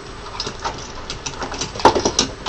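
Light clicks and knocks of an Allen key set being handled and rummaged through; a few scattered taps, the loudest near the end.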